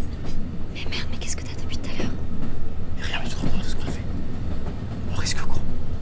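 Steady low rumble of a moving train carriage, with hushed whispering over it at irregular moments.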